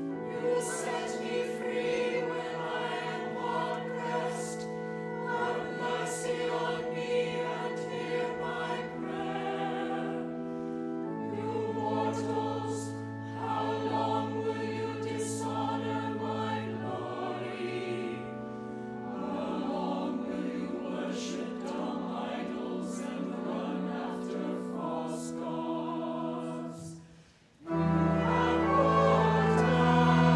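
Mixed church choir singing with pipe organ accompaniment, held chords changing every few seconds. The sound breaks off briefly just before the end, then the next phrase begins.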